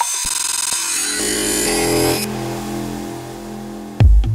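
Drumless breakdown in a minimal techno DJ mix: a buzzing, noisy high swell that cuts off suddenly a little past two seconds in, over sustained low synth chords that enter about a second in and slowly fade.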